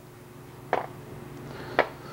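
Bread slices set down one at a time on a metal tray: two light knocks about a second apart, over a steady low hum.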